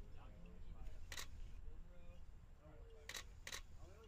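Three sharp clicks from a glass fuel-sample jar being handled, one about a second in and two close together near three seconds, over faint distant voices.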